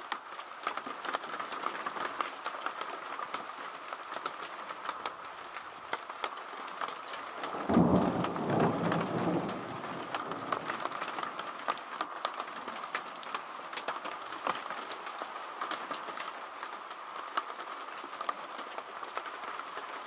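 Steady rain with raindrops ticking close by. About eight seconds in, a clap of thunder rolls for a couple of seconds and fades back into the rain.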